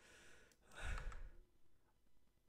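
A man's single breathy sigh, a short exhale into a close microphone about a second in.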